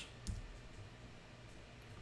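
Quiet room tone with a steady low hum and a single faint click about a quarter of a second in, from computer use at the desk.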